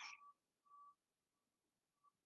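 Near silence, with a faint, thin high tone that comes and goes three or four times.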